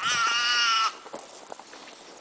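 Bushbuck calf bleating in distress while chacma baboons attack it: one loud, wavering cry of just under a second.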